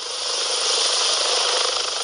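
A helicopter flying in to land, heard as a steady rush of rotor and engine noise that grows a little louder over the first half-second.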